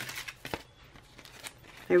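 Faint paper-and-plastic rustling of planner sticker sheets being handled, mostly in the first half-second and then near quiet, with a woman's voice starting just at the end.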